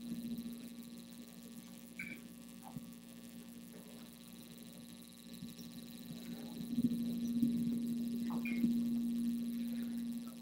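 Steady electrical hum through the sound system, growing noticeably louder in the second half, with a few faint clicks.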